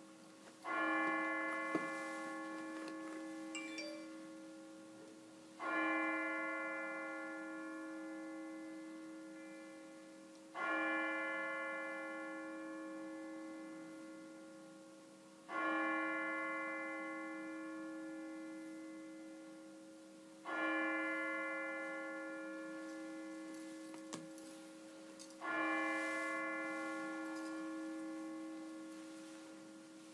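A single church bell tolling slowly, struck six times about five seconds apart, each stroke ringing on and fading before the next.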